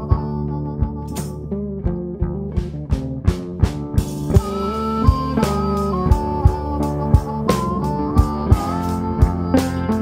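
Live blues band playing an instrumental break with no singing: electric guitar and harmonica carrying held, bending notes over bass guitar, with a drum kit keeping a steady beat that gets busier after the first few seconds.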